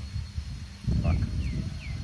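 A bird gives three short falling chirps about a second in, over an uneven low rumble on the microphone that gets louder just before the first chirp.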